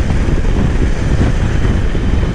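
Steady wind rush and road and engine noise from a BMW R18 bagger motorcycle riding at cruising speed, dense and low.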